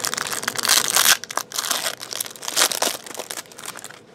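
Clear plastic wrapper of a trading-card pack crinkling and tearing as it is ripped open by hand. The crackling thins out near the end.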